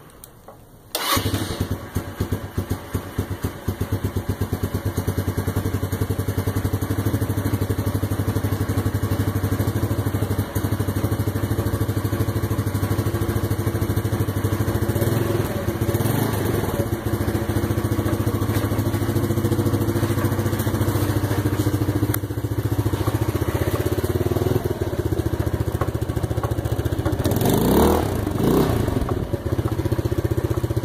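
Ice Bear 150cc scooter-type trike engine electric-started with the handlebar button, catching about a second in and then idling steadily. Its revs rise briefly around the middle and climb and fall again near the end as the throttle is blipped.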